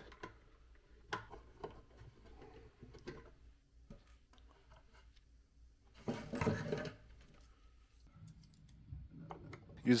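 Small hand tools at work on a wooden box: a screwdriver and loose hinge screws give scattered faint clicks and scrapes. About six seconds in, a louder handling noise lasts about a second.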